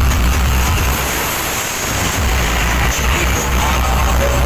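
Loud DJ sound-system speaker stacks playing bass-heavy music, heard as a dense rumble with noise across the whole range; the deep bass drops away for about a second in the middle, then returns.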